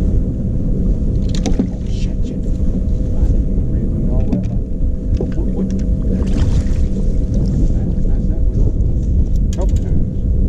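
Steady low rumble of wind buffeting the microphone on an open boat on the water, with a faint steady hum underneath.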